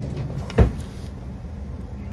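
A single dull knock about half a second in, over a low steady rumble. It is plausibly the spoon or the meal tray bumping on the counter as she eats.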